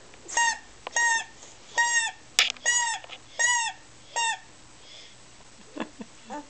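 Small plastic toy horn blown in short puffs: six brief, high toots about three quarters of a second apart, each sagging in pitch as the breath runs out. A sharp click comes about halfway through.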